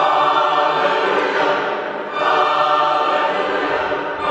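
A choir singing in several parts, coming in together at the start and again just after two seconds in.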